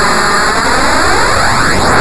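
Loud, harsh electronic noise, steady in level, with a whooshing phaser-like sweep that sinks and then rises again through it.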